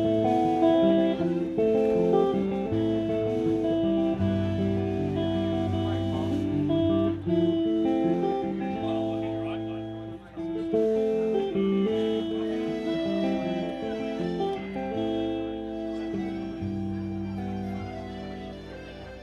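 Live rock band playing an instrumental passage led by guitars, held notes shifting every half second or so over a steady bass line, with a short dip in level about ten seconds in.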